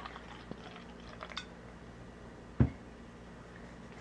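Quiet handling of a glass beer bottle and a plastic cup after a pour: a few faint clicks, then one sharp knock a little past halfway through.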